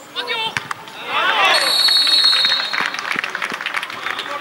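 Footballers shouting and cheering as a goal goes in, several voices overlapping, loudest from about one to three seconds in. A long, steady high whistle blast runs through the middle of the shouting.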